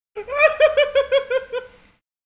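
A man's high-pitched laugh: a quick run of 'ha' pulses, about six a second, sinking slightly in pitch and fading out near the end.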